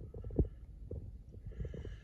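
Low rumbling with irregular soft thumps from a handheld phone being moved about, with one sharper knock about half a second in.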